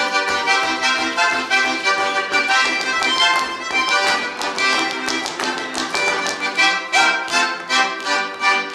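Russian folk dance music led by an accordion, with a brisk, even beat.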